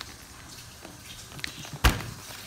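Light handling noise from a heavy paper bag of flour being moved, then one sharp thump near the end.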